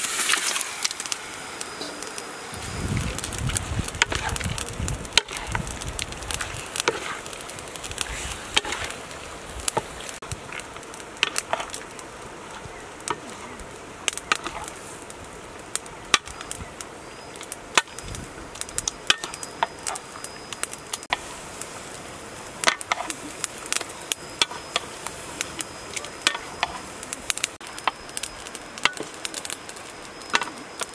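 Raw pork belly pieces dropping into a hot metal wok and sizzling, with a spatula repeatedly scraping and clacking against the pan as the meat is stirred.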